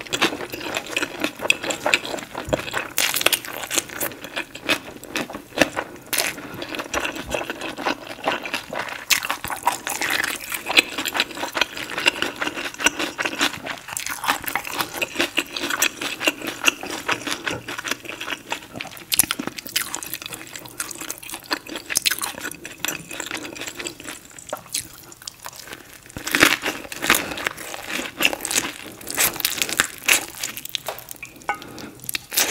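Close-miked chewing of a fresh rice-paper spring roll with lettuce: a dense run of quick, wet mouth clicks and smacks. It thins out for a moment a little after the middle, and a cluster of sharper clicks comes near the end.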